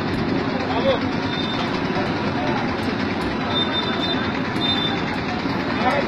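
Steady street-market noise: traffic running, with people talking.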